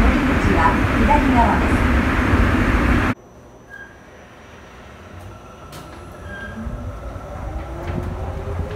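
Sapporo Subway Namboku Line train. Loud running noise for about three seconds, then an abrupt cut to a much quieter car. About six seconds in, the motor whine begins to rise steadily in pitch, as a train accelerating away does.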